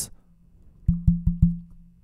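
An earphone being handled while it is tested: four quick clicks about a second in, over a low electrical hum.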